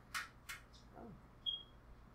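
Quiet handling of a small plastic makeup compact: two brief scuffs near the start, then a short sharp high click about one and a half seconds in.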